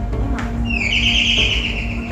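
Background film-score music: a steady low bed with a bright high note held for about a second in the middle.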